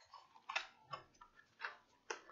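Faint taps and scrapes of cardboard medicine boxes being handled and turned over in the hands: a few short, separate clicks.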